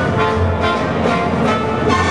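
Orchestral skating music played over the rink's loudspeakers, holding sustained chords with a few light accents.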